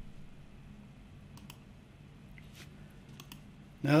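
A few faint, scattered clicks over a low steady room hum, with a man's voice starting to speak right at the end.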